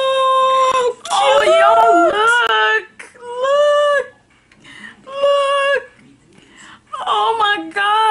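A woman's high-pitched, drawn-out emotional cries: a long held note, then wavering ones, two shorter ones with gaps, and a choppier run near the end. They are cries of being deeply touched by a gift.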